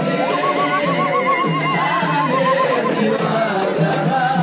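A woman ululating: one high, rapidly warbling trill lasting about three seconds, over music and a singing crowd.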